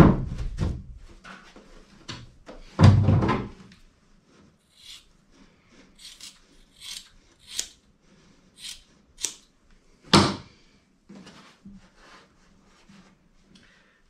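A roll of glass-fibre tape knocking on the plywood floor of a boat hull: two wooden thunks about three seconds apart. Then scissors snip through the glass-fibre cloth in a run of short, crisp cuts, with one sharper knock about ten seconds in.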